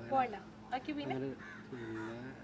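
A man talking in Malayalam in short bursts, with a crow cawing.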